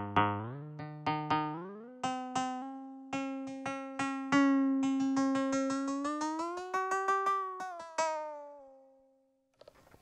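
ATV aFrame electronic hand percussion struck repeatedly by hand, each stroke a pitched electronic tone built from a stack of overtones from the natural overtone series. The pitch steps up over the first two seconds as the main tuning is raised. Fast runs of strokes then slide the pitch up and back down, a pretty wacky sound, and a last stroke rings and fades out about a second before the end.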